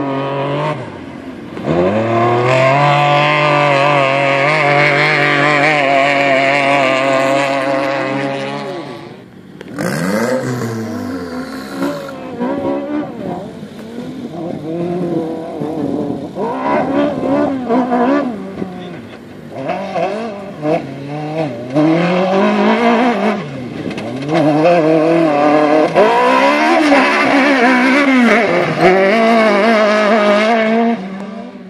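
Racing buggy engines revving high, the pitch rising and falling as they accelerate, change gear and lift off. There is a brief drop about nine seconds in.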